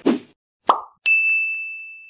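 Logo-sting sound effects: a short pop, then about a second in a single high bell-like ding that rings on and slowly fades.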